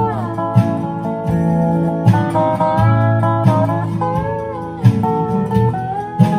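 Dobro (squareneck resonator guitar) played lap-style with a steel slide bar and picks, a melody in A with picked bass notes under it. The bar glides down into a note right at the start and slides up into another about four seconds in.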